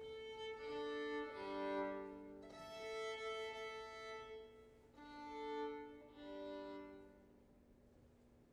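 Violin being tuned: open strings bowed two at a time in fifths, a string of long held double stops one after another, stopping about seven seconds in.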